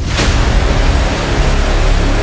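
Edited-in dramatic sound effect: a loud wall of noise that hits suddenly and holds over a deep rumble, part of a dark musical sting.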